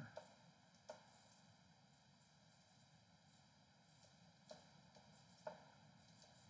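Near silence: room tone, broken by three faint, brief ticks.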